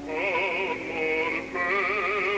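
Operatic singer with wide vibrato over orchestra: one long held note, a brief break, then another held note about a second and a half in.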